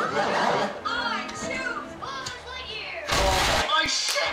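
Remixed animated-film soundtrack: character voices over music, then a loud, deep burst about three seconds in, like an explosion.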